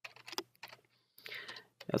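Computer keyboard keystrokes: several quick taps in the first second while code is being deleted and edited.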